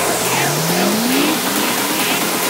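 Full-on psytrance track with the low end dropped out: a tone glides upward in pitch over about a second and a half, then rises again, over dense high hissing percussion.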